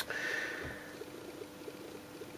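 A single sharp click as a DC barrel plug is pulled from a circuit board's power jack, followed by a faint steady hum.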